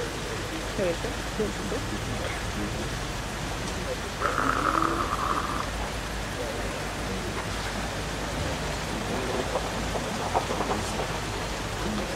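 Outdoor crowd ambience: a low murmur of distant voices over a steady hiss. About four seconds in, a buzzy tone sounds for about a second and a half.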